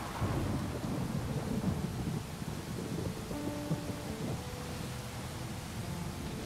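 Low rumble of thunder over steady rain, swelling just after the start and strongest in the first half.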